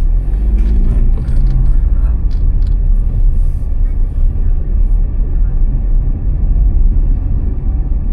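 A car driving, with a loud, steady low rumble of road and engine noise and a faint rising engine note in the first second as it pulls through a turn.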